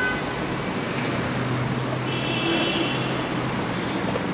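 Road traffic noise: a steady hum of vehicles, with a brief high-pitched tone about two seconds in.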